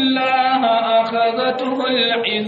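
A single voice chanting a repeated Arabic refrain in long, held melodic notes.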